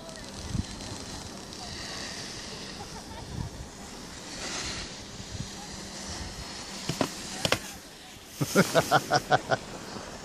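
A person laughing near the end: a quick run of six or seven loud, evenly spaced bursts of breath and voice, after a few seconds of faint, steady background hiss.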